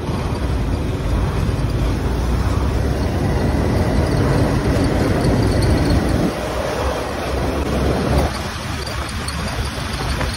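Sport motorcycle riding through traffic: engine and wind noise over the bike-mounted microphone, a steady loud rush that eases somewhat about six seconds in.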